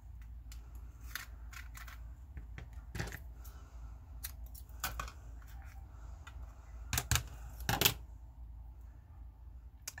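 Washi tape being pulled and torn from a plastic tape dispenser and handled on paper: scattered small clicks and crinkles, with a few sharper snaps, two of them close together late on.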